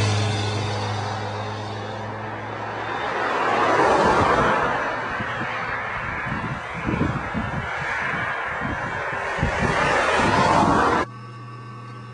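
Cars passing close by on a two-lane road, their tyre and engine noise swelling and fading about three times. The sound drops off suddenly near the end.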